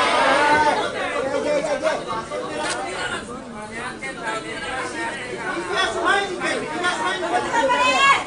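Spectators chattering and calling out near the phone, several voices overlapping in a large hall.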